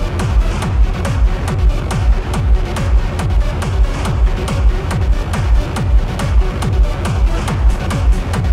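Electronic dance music from a DJ set, with a steady four-on-the-floor kick drum at about two beats a second and quick hi-hat ticks between the kicks.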